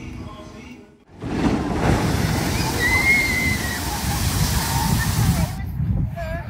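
A brief snatch of intro music, then wind buffeting the microphone: a loud, steady, rumbling rush. A single faint high call is heard about halfway through.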